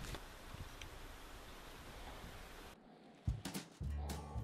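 Faint, steady outdoor ambience, an even hiss with no distinct events, that cuts off abruptly about three-quarters of the way through. A few faint clicks follow near the end.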